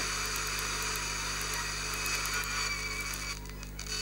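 Hiss from an RTL-SDR FM receiver built in GNU Radio, tuned between stations, over a steady low hum. About three seconds in, the hiss cuts out as the receiver quietens on a station.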